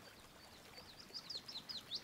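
A small bird singing a quick run of short, high chirps that begins about a second in, over faint outdoor background noise.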